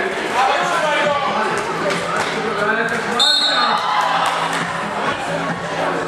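Indoor basketball game in a school gym: a ball bouncing on the floor amid players and spectators calling and shouting in the echoing hall, with a brief high-pitched tone about three seconds in.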